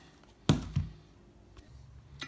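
A sharp knock about half a second in, then a softer one just after: handling noise as the multimeter and its test leads are picked up and moved. A faint low hum follows.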